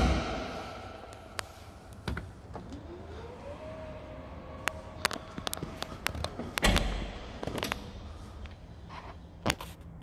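Electric motor at the rear of a 2016 Volvo XC90 running for about three seconds: a whine that rises in pitch, then holds steady and stops. About a second later comes one heavy clunk, with scattered light clicks and taps around it.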